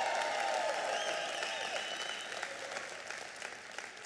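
Congregation applauding, the clapping dying away gradually.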